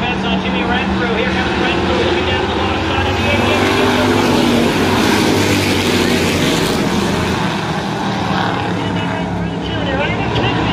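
A field of street stock race cars' engines running as they pass in a line, growing louder with a rising engine note through the middle before easing off. A voice can be heard underneath.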